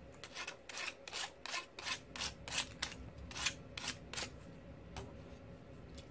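Sandpaper rubbed by hand over the bolt holes of the printer's aluminium gantry to deburr them. A quick run of about a dozen short scratchy strokes, stopping about four seconds in.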